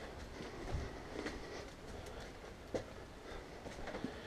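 Gloved hands turning and stirring potting soil mix in a wading pool: a faint rustling of soil, with a few soft clicks.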